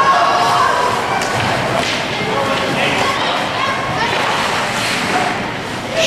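Ringette game noise on an ice rink: a series of thumps and clatters from sticks, skates and the ring on the ice and boards, under distant voices of players and spectators.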